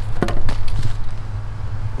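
Handling noise: a few short knocks and light rustles, about a quarter and half a second in, as a sheet of foam is carried and laid on dry leaves and pine needles. A steady low rumble of handling noise lies on the microphone under it.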